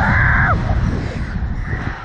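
A rider's high-pitched "woo" yell that falls in pitch and breaks off about half a second in, over heavy wind buffeting on the ride-mounted microphone as the slingshot ride swings through the air.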